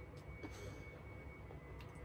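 Near-quiet room tone: a low steady hum and a thin, faint high whine, with a couple of faint soft clicks.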